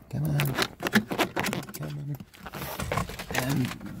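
A video cable being pulled up through a car dashboard, with scraping and clicking of wire against plastic trim throughout. Three short hums of a voice come near the start, in the middle and near the end.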